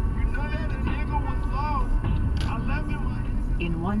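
Steady low road and engine rumble of a car driving at highway speed, heard from inside the cabin, with faint indistinct voice sounds. A navigation voice starts giving a direction right at the end.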